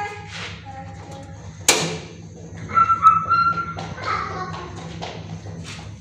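A single sharp click about two seconds in, as the gas burner under an aluminium pan is lit, over a steady low hum. About a second later comes a brief high-pitched call.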